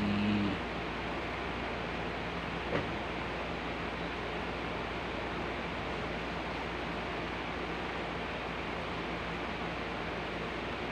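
Steady background hiss with a faint low hum, and a single faint click about three seconds in.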